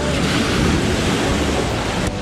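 Small ocean waves breaking and washing around a camera held at water level in the shallows, splashing close to the microphone. The sound cuts off suddenly at the end.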